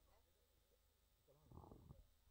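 Near silence in a pause of the commentary, with a faint, brief voice near the end.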